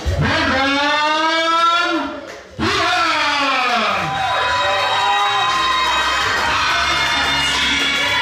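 A ring announcer's long, drawn-out call over the PA in two swooping phrases, the first rising then falling, the second falling. About four seconds in, fighter entrance music takes over with held notes over a steady bass.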